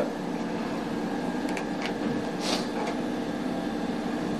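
A steady machine hum with constant low tones, broken by a few faint ticks and a short hiss about two and a half seconds in.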